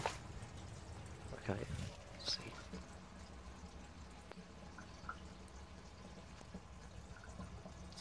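Faint trickling and dripping of water filling a 1939 Bolding of London 3-gallon urinal cistern, the tank getting quite full.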